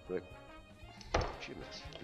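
A kitchen knife cutting through a ruby grapefruit and striking the chopping board, one sharp knock about a second in, followed by lighter scraping of the blade.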